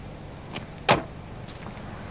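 A car door slamming shut once, a loud thump about a second in, over a low steady hum with a few light clicks around it.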